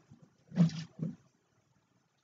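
A woman's two short breathy vocal sounds without words, the first about half a second in, a shorter, lower one just after a second in.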